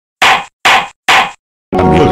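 A wooden gavel banging three times, evenly spaced about half a second apart, each strike with a short ring. Music with sustained tones begins near the end.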